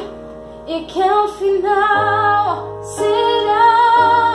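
A woman singing with digital piano accompaniment; her voice pauses briefly at the start and comes back in just under a second in, over held piano chords, with a deep bass note joining about halfway through.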